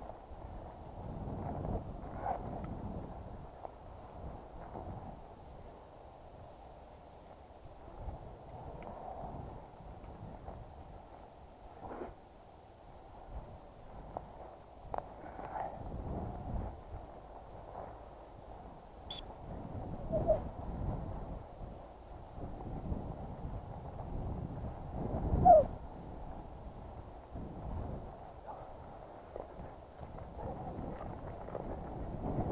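Footsteps swishing and crunching through tall dry grass, uneven and continuous, with scattered sharper knocks; the loudest knock comes about 25 seconds in.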